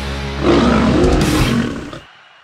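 Lion roar sound effect over heavy rock music, the roar coming in loud about half a second in and fading away near the end.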